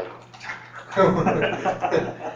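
Indistinct speech from people in a room, louder from about a second in.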